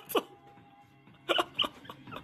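A person laughing in short, hiccup-like bursts: one just after the start, then a quick cluster about a second and a half in, with a quiet gap between.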